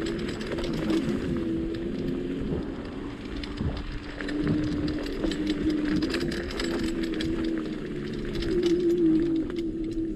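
KugooKirin G3 electric scooter ridden over a rough dirt trail: a steady electric-motor whine that drops a little in pitch about three seconds in and rises again near the end, under tyre noise and frequent rattles and knocks from the bumpy ground.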